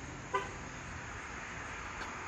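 A single short car horn toot about a third of a second in, over steady street background noise.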